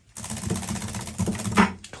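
A half-round paint brush being cleaned in a brush-cleaning bucket: a quick run of rapid rattling and slapping that lasts about a second and a half and stops just before the talk resumes.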